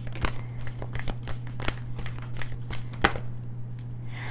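A tarot deck being shuffled overhand by hand: an irregular patter of soft card clicks and slides, with one sharper snap about three seconds in. A steady low hum runs underneath.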